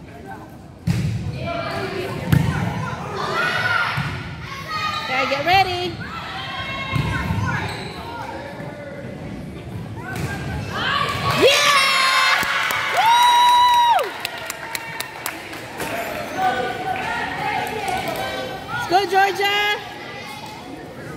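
Volleyball rally on a gym's wooden floor: repeated thuds of the ball being passed and struck, with players and spectators calling and shouting as the point is played out. About two-thirds of the way through, a sustained high tone holds steady for just over a second.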